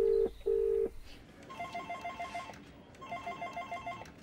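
Telephone call ringing out: a ringback tone gives two short beeps, then an electronic desk phone rings with a fast trill, twice, each ring about a second long.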